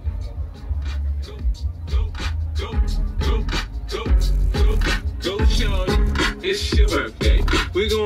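Hip-hop track with rapping played through a car audio system, with heavy bass from three 10-inch Carbon Audio subwoofers driven by a JL Audio amplifier. The rap vocal comes in a couple of seconds in, and the volume goes up about halfway through.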